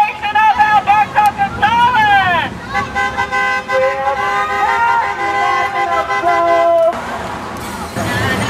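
Voices calling out in rising-and-falling shouts for the first two seconds or so. Then a long, steady vehicle horn blast of about four seconds, with voices under it, cuts off sharply near the end.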